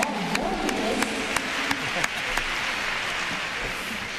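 Arena crowd applauding, with a few sharper nearby handclaps in the first couple of seconds; the applause dies away toward the end.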